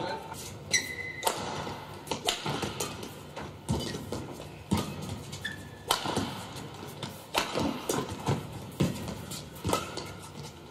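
Badminton rally: the racket strikes the shuttlecock roughly once a second as the players trade shots. Brief squeaks of court shoes come about a second in and again near the middle.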